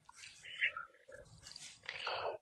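Faint, indistinct voice sounds and soft noises carried over a live-stream call in a pause between sentences.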